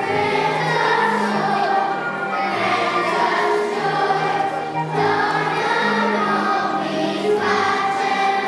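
A children's choir singing a song, with low held notes of accompaniment beneath the voices.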